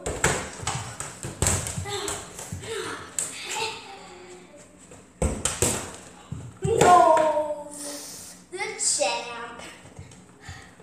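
Children yelling and squealing during a rough ball game, with thuds and scuffling. There are sharp thuds near the start and about five seconds in, and the loudest yell comes about seven seconds in.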